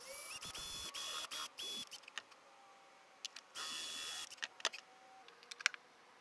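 Cordless drill with a spade bit boring into a block of zebrawood: the motor whines up to speed and runs in three short bursts in the first two seconds and once more near the middle, followed by small clicks and knocks.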